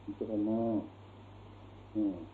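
A man's voice holding one drawn-out spoken syllable in an old talk recording, followed by about a second of hiss over a steady low hum.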